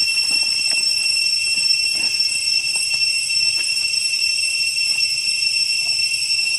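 Steady high-pitched drone of cicadas, several shrill tones held level without a break, with a few faint soft ticks over it.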